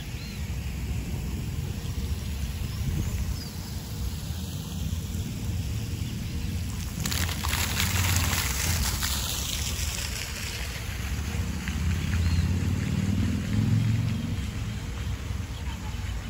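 Water from a small fountain jet splashing into a pool, loudest for about three seconds starting about seven seconds in, over a steady low rumble.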